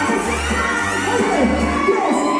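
Loud music with a pulsing bass line, under a crowd of children and adults shouting and cheering.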